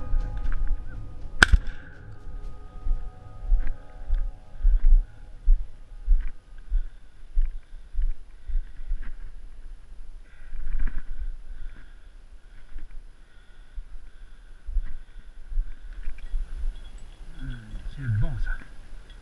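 Footsteps and camera-rig handling on a dry dirt track, with a hunting dog's bell ringing faintly on and off. A single sharp click comes about a second and a half in, while background music fades out over the first few seconds.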